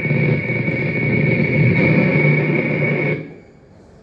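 Live electronic drone played through an amplifier: a dense, steady sound with a high sustained whine over a low rumbling layer. It cuts off abruptly about three seconds in, ending the piece.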